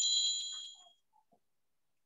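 A single high-pitched notification ding from a computer or phone, ringing with a few clear tones and fading away within about a second.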